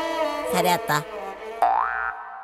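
Background film-score music with held tones and a few short vocal sounds, topped near the end by a comic sound effect: a single quick upward-sliding tone.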